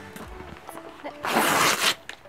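Kraft-paper padded mailer envelope ripped open along its top edge in one quick, loud tear lasting just over half a second, starting a little past the middle.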